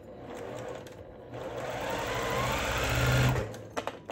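Electric sewing machine stitching a short seam through quilt fabric, running steadily and getting louder as it picks up speed, then stopping about three and a half seconds in, followed by a few short clicks.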